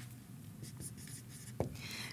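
Marker writing a short word on a whiteboard: faint strokes, with a light tap near the end.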